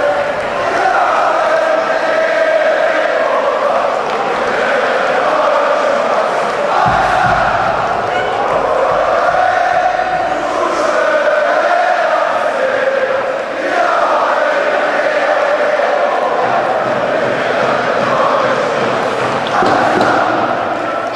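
Large crowd of ice hockey fans singing a chant together, continuously, across the whole arena.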